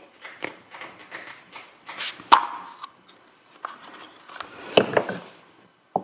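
A wooden matryoshka doll being twisted and pulled open: the two wooden halves rub and scrape at the joint, with a sharp click about two seconds in, and a few more light wooden knocks and handling sounds near the end.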